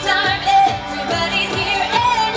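Parade soundtrack song: singing over a steady beat.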